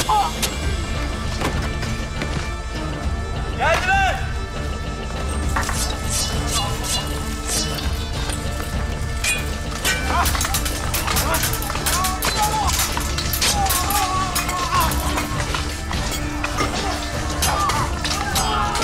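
Swords clashing again and again in a close fight, sharp metal strikes coming thick from about five seconds in, mixed with men's shouts and cries over dramatic background music.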